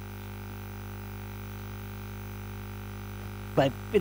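Steady electrical mains hum: a low, constant drone with several fainter higher tones above it. A man's voice says one word near the end.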